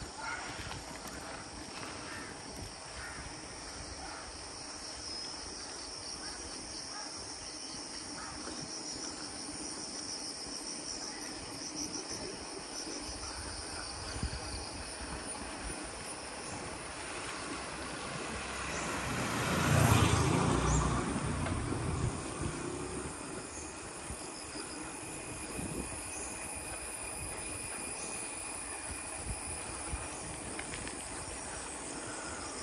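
Insects chirring steadily. A passing vehicle swells and fades over the chirring; it is loudest about twenty seconds in.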